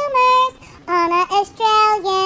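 A high voice singing the closing line of the song's chorus, in sustained notes with a short break about halfway.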